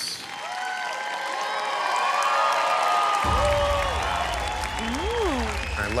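Background music under the tattoo reveal: overlapping gliding, swooping tones, with a deep bass that comes in suddenly about three seconds in.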